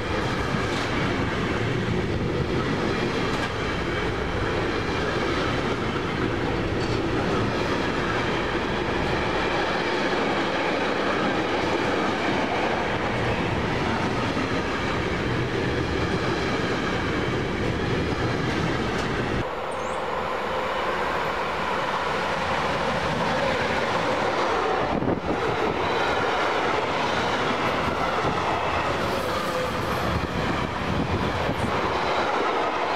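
Container freight train wagons passing close by at speed: a steady, loud rush of wheels on rail. About two-thirds through, the deep part of the sound drops away.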